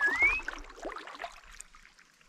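Kayak paddle blades dipping and pulling through calm river water. At the very start there is a short, clear whistle that dips and then rises in pitch.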